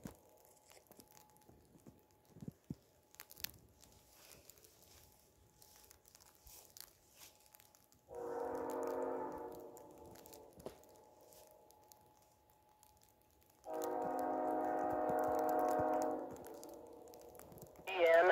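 Approaching freight train's locomotive air horn, a Norfolk Southern unit leading, sounding two long chord blasts. The first comes about eight seconds in and the second, longer one about five seconds later.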